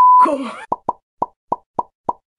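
A steady censor bleep cuts off a quarter second in, followed by a short spoken syllable. From under a second in comes a run of short cartoon pop sound effects, about three a second.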